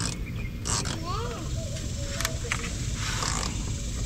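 A few light, sharp clicks of plastic push-pin fasteners being worked loose from a car's underbody splash shield by gloved hands.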